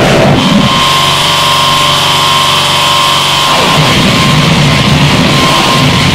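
Harsh noise music, a loud, dense wall of distorted noise. About half a second in, a droning stack of steady tones with a high whine above it rises out of the noise. At about three and a half seconds it dissolves back into churning noise.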